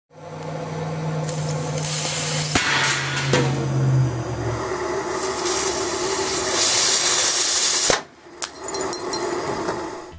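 Gas blowtorch and steam hissing from a sealed, heated test tube, the hiss growing louder, then a sharp crack about eight seconds in as the pressurised tube blows out, after which the sound drops away.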